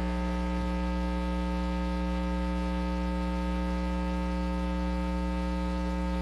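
Steady electrical mains hum with a buzzy stack of overtones, unchanging in pitch and level.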